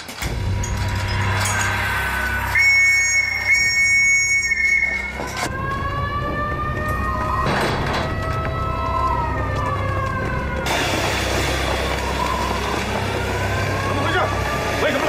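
Alarm siren wailing, its pitch rising and falling slowly, over loud background music with a steady low rumble.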